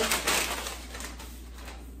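Brown paper bag rustling briefly near the start, then a quieter stretch of small handling noise.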